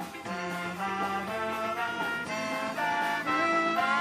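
Live band music led by a brass section of trombone and trumpet playing a riff of held notes that step from pitch to pitch.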